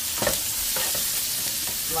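Diced onions sizzling in hot fat and pan drippings in a nonstick skillet while a wooden spatula stirs and scrapes them around the pan, with one brief louder scrape about a quarter second in.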